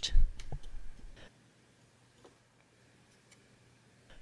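A few faint, small clicks in the first second or so, then near silence.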